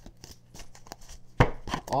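A deck of oracle cards being shuffled by hand: a quick run of light card clicks, with one sharp slap of cards about one and a half seconds in.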